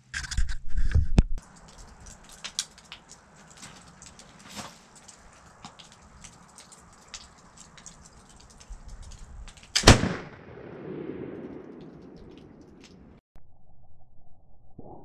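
.45 calibre flintlock pistol (small Chambers lock, Green Mountain barrel) firing a single shot about ten seconds in, the report dying away over about three seconds. Before it there is a loud rough noise in the first second or so, then faint ticks and clicks while he aims.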